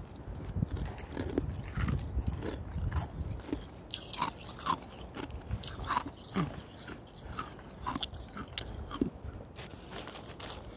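Hospital nugget ice being chewed close to the microphone: irregular crisp crunches and crackles as the pellets break between the teeth, with a low rumble during the first few seconds.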